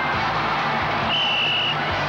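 Background music over baseball stadium crowd noise, with a high note held for about half a second around the middle.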